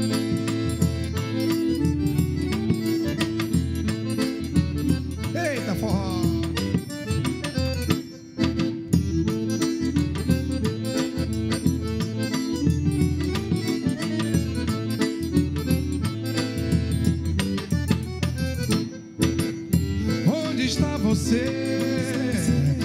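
Forró trio playing an instrumental passage: a Scandalli piano accordion carries the melody in steady held chords. Under it runs the regular low beat of a zabumba bass drum struck with a felt mallet.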